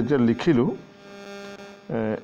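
A man speaking a word in Assamese, then a steady electrical hum heard on its own in the pause before he speaks again.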